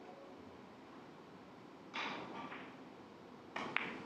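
A three-cushion carom billiards shot: a sharp hit with a short ringing tail about two seconds in, as the cue strikes the cue ball, then two quick ball clicks near the end as the balls meet.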